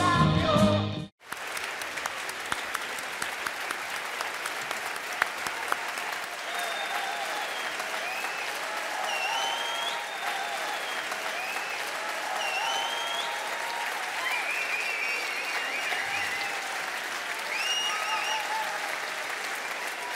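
Music that cuts off abruptly about a second in, then a large audience applauding steadily and at length.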